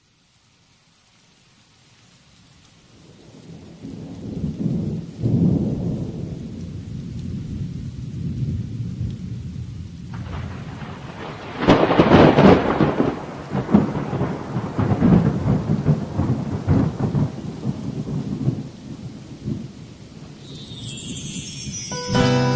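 Thunderstorm recording of steady rain with rolling thunder, fading in from silence. The rumbles build, the loudest thunderclap comes about twelve seconds in, and more rolling follows. Soft pitched music comes in near the end as a song's intro.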